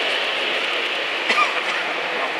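4mm-scale model train running along the layout's track, a steady whirring rumble of motor and wheels on rails, with one brief click about 1.3 s in.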